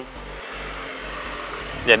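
A steady rushing background noise of distant vehicles, even and unchanging, with a man's voice starting just before the end.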